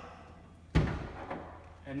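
A single heavy thump about three-quarters of a second in, as the boiler's removed front cover is set down.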